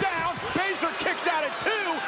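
Excited voices rising and falling quickly in pitch, heard as speech; no clear impact stands out.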